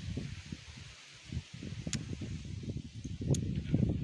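Green apple being bitten and chewed close to the microphone, with a few short sharp crunches, over an uneven low rumble on the microphone.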